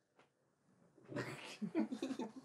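Near silence for about a second, then a breathy exhale followed by short pitched vocal sounds from a person.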